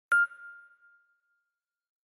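A single bright ding from a logo-intro chime: one sharp strike whose clear tone rings out and fades away over about a second.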